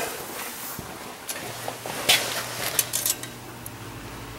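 Light metallic clicks and rattles as a steel tape measure is handled and laid across a snowmobile ski, the sharpest about two seconds in. A low steady hum comes on about a second and a half in.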